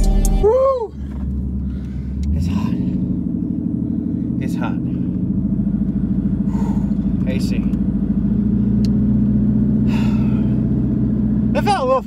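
Twin-turbocharged 5.0 Coyote V8 of a 2019 Ford Mustang GT heard from inside the cabin, running steadily at low road speed. Its note steps up a little about two and a half seconds in and then holds.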